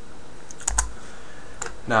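A few computer keyboard keystrokes, sharp separate clicks: three close together a little after half a second in and one more near the end, over a faint steady hiss.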